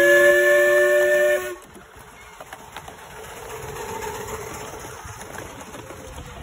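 Miniature steam locomotive's whistle blowing one steady blast of several notes together for about a second and a half, then cutting off. The rest is the quieter rumble of the miniature train running along the track.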